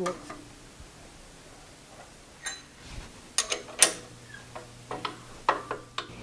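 Scattered metallic clicks and clinks, a few of them sharp with a brief ring, as a keyway chisel tool is handled and fitted in a milling machine spindle. A low steady hum comes in about four seconds in.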